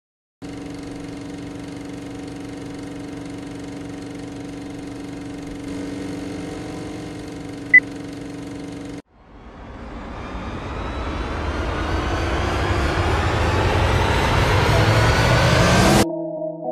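Film-countdown intro sound: a steady hum of many tones, broken by a single short high beep about eight seconds in as the countdown reaches two. The hum cuts off suddenly about a second later, and a noisy swell rises steadily in pitch and loudness.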